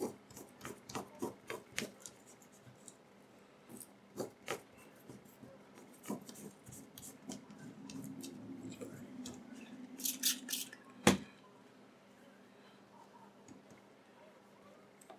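Light scrapes, taps and rubbing as an iPod battery is wiped clean and handled. A short run of steady rubbing comes about eight seconds in, and one sharp click about eleven seconds in.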